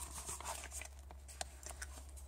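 Clear plastic die packaging being handled: soft crinkling with a few light, sharp clicks, over a steady low hum.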